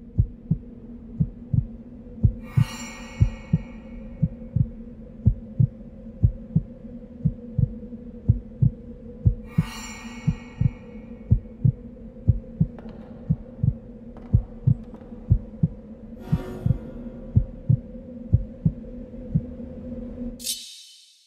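A heartbeat sound effect thumping in double beats about once a second over a steady low hum. A bright ringing swell rises three times, each lasting about a second: the intro of a hip-hop track.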